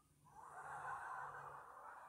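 Studio audience laughing, swelling in just after the start and fading away near the end.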